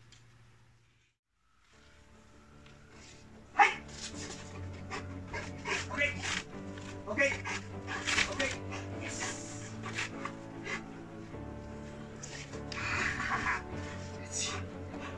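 Background music starts about two seconds in, after a brief silence, with a sharp knock soon after. Over the music a large dog vocalizes in short sounds while it plays tug with its trainer.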